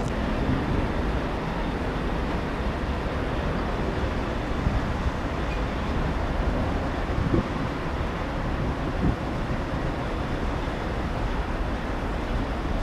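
Steady low outdoor rumble with wind buffeting the microphone, no distinct events.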